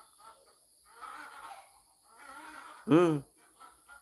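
Chickens calling faintly in the background, twice, about a second in and again just after two seconds, with a short spoken "mm" near three seconds.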